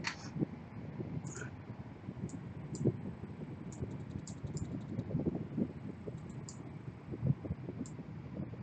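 Computer keyboard typing: irregular clicks and soft taps of keys, some sharp and some dull.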